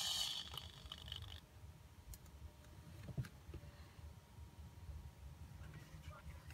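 Quiet workbench room tone with a few faint clicks from handling small plastic robot parts and cables; a high hiss cuts off about a second and a half in.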